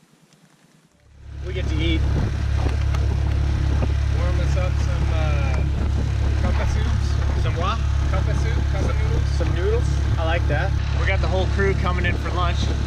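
Outboard motor of a small aluminum fishing boat running steadily under way, a loud low drone that comes in abruptly about a second in.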